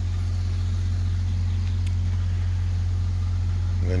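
An engine idling steadily: a low, even hum with no change in speed.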